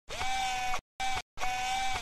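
Logo intro sound effect: three held tones at one steady pitch, long, short, long, each sliding briefly up at its start and separated by short gaps.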